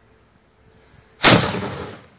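A 1-pounder bronze muzzle-loading black powder cannon firing: a faint hiss, then a single sharp blast about a second and a quarter in that dies away over about half a second.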